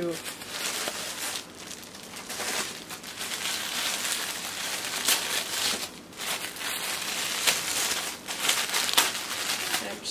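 Tissue gift wrap being handled and pulled open, crinkling and rustling continuously with a few short pauses.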